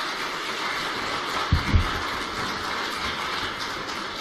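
Audience applauding steadily, with two low thumps about halfway through.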